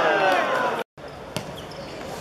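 Players shouting on a football pitch, cut off abruptly a little before halfway; after a brief silence, quieter pitch ambience with a single sharp thud of a football being kicked.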